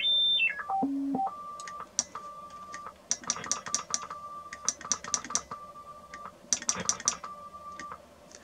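Beat note of a homebuilt Si5351-based CW transmitter heard on a receiver: a pure tone that drops in steps from a high whistle to a low hum, then settles near a thousand hertz and is keyed on and off in irregular dashes and gaps, with sharp clicks alongside.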